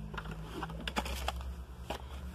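A few light clicks and taps of small plastic product containers being handled and set down on a surface, over a steady low hum.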